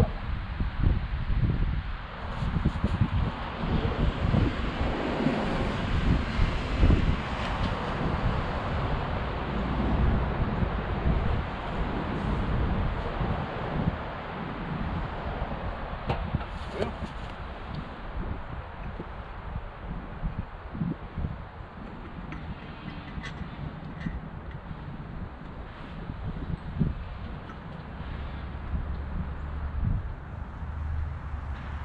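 Wind buffeting the microphone in gusts, heavier in the first half, with a few faint clicks and knocks from work in the engine bay.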